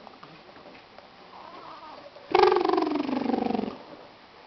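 A young baby's vocal sound: one drawn-out, pitched coo about two seconds in, lasting about a second and a half, falling slightly in pitch.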